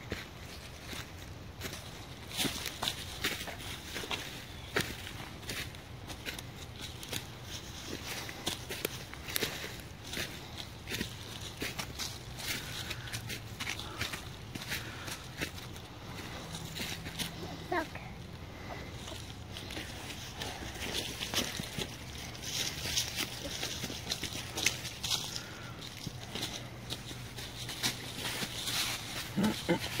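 Footsteps crunching and rustling through dry fallen leaves and twigs on a woodland path, in an irregular run of short crackles. Someone clears their throat at the very end.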